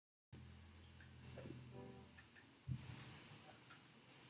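Near silence as the sound cuts in abruptly from dead silence: a faint low electrical hum from the stage sound system, with a couple of small clicks and knocks and a brief faint squeak while a student rock band sets up its guitars.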